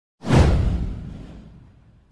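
A whoosh sound effect with a deep low rumble under it, starting abruptly just after the start, sweeping downward and fading out over about a second and a half.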